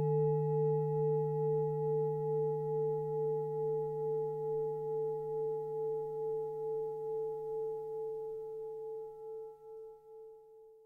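A singing bowl ringing out: a low hum under a higher tone that wavers steadily in loudness, with fainter overtones above, slowly dying away and nearly gone by the end.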